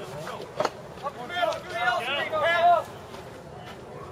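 Baseball players shouting drawn-out chatter calls between pitches, several loud yells in a row from about a second in. A single sharp knock comes just before them.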